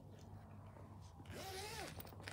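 Faint zipper-like rasp from handling the zippered hard-shell drone carry case, starting a little over a second in, with a short rising-and-falling tone near the end.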